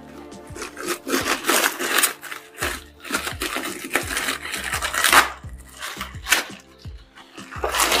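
Clear plastic bag crinkling and rustling in irregular bursts as it is pulled open and worked off a boxed appliance, over faint background music.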